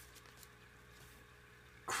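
Faint slide and flick of cardboard trading cards being moved off a hand-held stack, a few soft clicks over a low steady hum. A man's voice starts right at the end.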